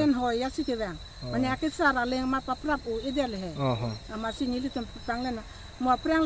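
Crickets chirring in one steady high-pitched trill, underneath a woman talking.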